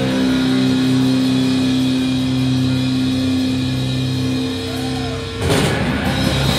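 Electric guitar holding one long sustained note that rings out for about five seconds, then drums and guitar crash back in together near the end.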